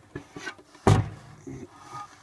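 A single sharp knock about a second in, with a few faint short low sounds around it: handling noise while the camera is held close to the opened subwoofer.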